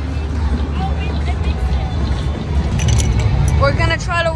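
Crowd chatter over loud background music with a heavy, steady bass. A single voice stands out near the end.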